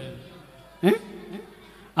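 A short pause in a man's amplified speech: quiet hall room tone, broken a little under a second in by one brief spoken syllable and a fainter sound just after.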